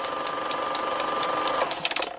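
A machine whirring with a steady whine and frequent sharp clicks. It swells in, and the whine stops shortly before the end.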